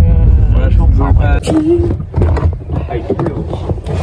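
Voices talking over the steady low rumble of a moving car's cabin.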